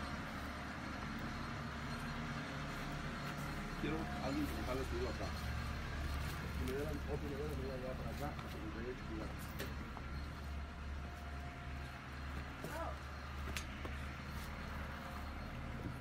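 A steady low engine hum, even in level throughout, with faint voices talking in the background.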